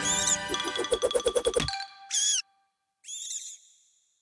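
Bright cartoon music with a quick run of repeated notes that stops abruptly, followed by two short high-pitched warbling squeak effects, the second fainter.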